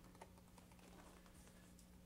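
Near silence: room tone in a meeting chamber with a faint steady low hum and a few faint ticks.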